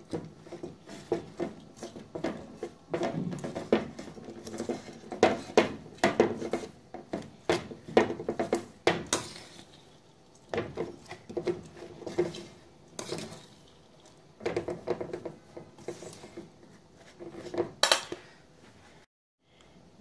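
A spatula stirring and tossing finely chopped cabbage and carrot in a stainless steel mixing bowl: irregular scrapes and knocks against the metal, stopping about a second before the end.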